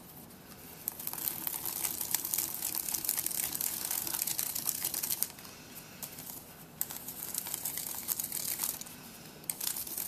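Cardstock flower petals rustling and crinkling as a stylus presses and curls them against a sheet of paper, in stretches broken by short pauses.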